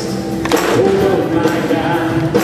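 Live worship band: several voices singing long held notes over a strummed acoustic guitar, with a fresh strum about half a second in.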